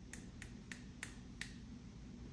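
Fingertip flicks against a plastic syringe, the nurse's routine for knocking air bubbles to the top before expelling them: five light, sharp clicks about three a second, the last the loudest.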